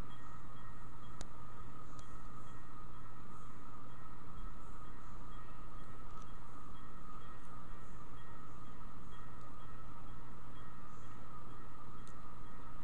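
Steady low hum and hiss of room background noise, unchanging throughout, with a single faint click about a second in.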